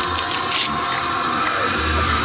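Background music, a song with a voice in it, with a short hiss about half a second in.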